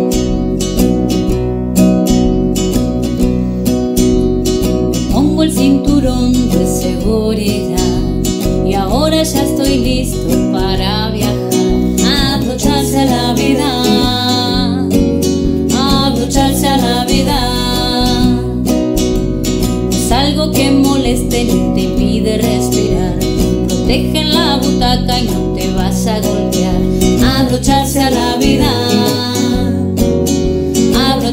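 Acoustic guitar strummed in a steady rhythm as accompaniment. A woman and a man sing a children's song over it from about five seconds in.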